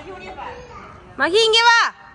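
A child's loud, high-pitched call lasting under a second, starting just over a second in and dropping in pitch at the end, over faint background chatter.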